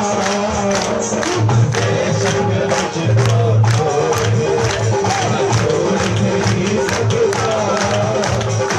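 Live Hindi devotional bhajan music: a voice singing a wavering melody over steady low accompaniment, driven by a percussion beat of about three strikes a second.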